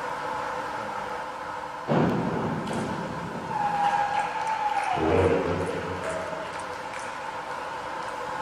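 A springboard diver's entry splash into the pool, sudden and loud about two seconds in, trailing off into sloshing water. It is followed by a long high call from the pool deck that falls in pitch, over the steady hum of the pool hall.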